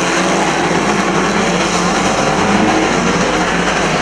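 Several pre-1975 banger-racing cars' engines running together at once, a loud, steady mixture of engine notes.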